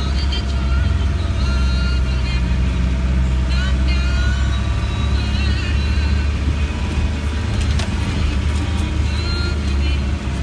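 Cab noise inside a Land Rover Defender 90: the engine and drivetrain drone steadily as it drives slowly along an unmade track.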